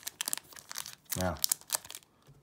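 A foil Yu-Gi-Oh booster pack crinkling and rustling as it is handled in the fingers, making a rapid series of small crackles.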